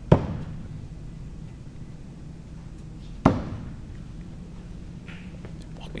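Two throwing axes striking the wooden target boards, each a single sharp thunk with a short ring-out: one right at the start and the second about three seconds later.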